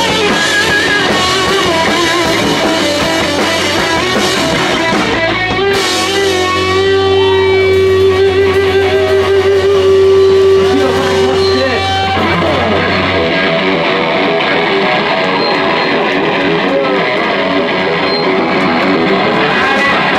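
A rock band playing live, with electric guitar to the fore over drums. About six seconds in the music settles into a long held note for around six seconds, then the busier playing returns.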